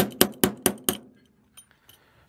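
About five quick metal-on-metal taps, roughly four a second, each ringing briefly, stopping about a second in: a hand tool knocking a stepper motor bracket on the aluminum frame to line up its screw holes. A couple of faint clicks follow.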